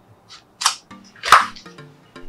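Plastic whiteboard sticker sheet crackling as it is unrolled by hand: three sharp crackles, the loudest a little after a second in. Background music with plucked notes comes in after about a second.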